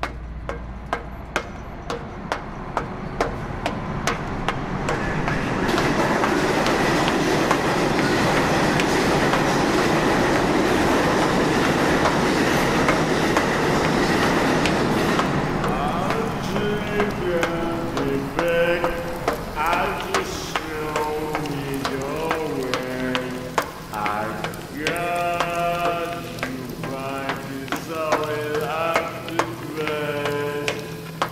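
Subway train passing: a rumble that builds over several seconds and fades about halfway through, over a steady run of sharp clicks. In the second half, wavering voice-like tones, like moaning or singing, take over.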